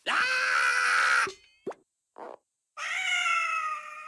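A cartoon cat character's voice yelling: two loud, drawn-out cries of about a second each, the second gliding slightly down in pitch, with two brief short sounds in the gap between them.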